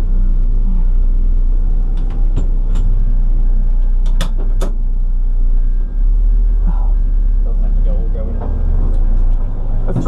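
Car engine idling with a steady low rumble, heard from inside the cabin, with a few sharp clicks about two and four seconds in.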